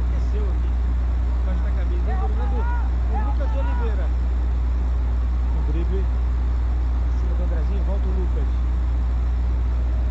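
A loud, steady low hum with no change in pitch or level, with faint voices underneath it.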